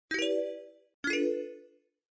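Two ringing electronic notes of an intro jingle, about a second apart, each starting sharply and dying away within about half a second, the second a little lower than the first.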